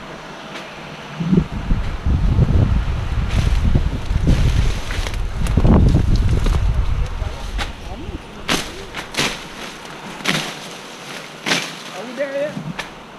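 Leaves and vines rustling heavily as someone pushes through thick undergrowth, with a low rumble on the microphone. In the last few seconds come a run of sharp snaps and cracks, like stems and twigs breaking underfoot.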